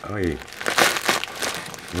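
Paper padded mailer crinkling and rustling as it is handled and pulled open by hand.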